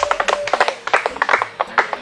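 A group of people clapping by hand, many sharp claps a second at an uneven pace.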